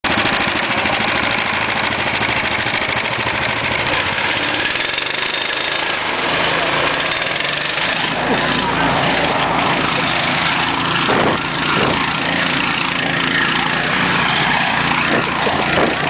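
Two 13 hp Harbor Freight single-cylinder gasoline engines running together at a steady, loud pace.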